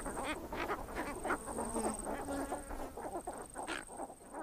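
Many short bird calls overlapping in quick succession, from a flock calling together, over a thin steady high whine.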